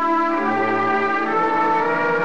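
Orchestral music bridge led by brass, playing held chords that shift twice; it is the radio drama's cue marking the end of a scene.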